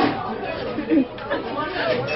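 Indistinct chatter: people's voices talking, with no distinct non-speech sound standing out.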